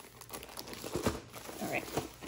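Thin plastic bag around a rolled canvas crinkling as it is handled, an irregular run of crackles.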